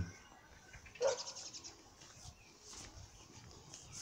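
A brief animal call about a second in, with faint high bird chirping after it and later on.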